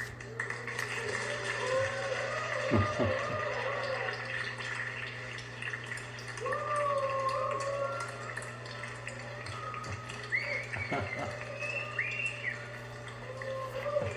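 Music playing: a slow, wavering melody line, with a steady low hum underneath.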